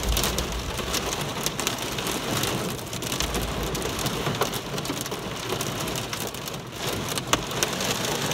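Heavy rain pelting the roof and windows of a car, heard from inside the cabin as a dense hiss of countless drop impacts, with low rumbles near the start and again about three seconds in.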